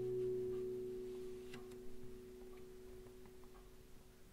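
Acoustic guitar chord ringing out and slowly dying away, with a couple of faint clicks from the strings about a second and a half in.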